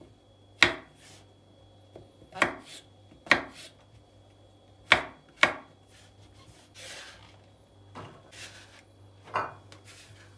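Chef's knife chopping peeled button mushrooms on a bamboo cutting board: several sharp, separate strikes of the blade against the board, unevenly spaced, with a softer scraping sound about seven seconds in.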